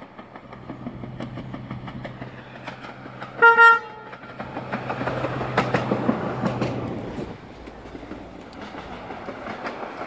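Swedish diesel railcar SB 1212 approaching and passing beneath, its steady engine note growing louder. About three and a half seconds in it gives two quick blasts on its horn, the loudest sound. Its wheels then click over the rail joints as it passes under, and the engine note drops away after about seven seconds as it runs off.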